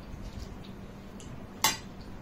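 A single sharp clink of tableware, a dish, cup or utensil knocked or set down at a meal table, about one and a half seconds in, over quiet room sound.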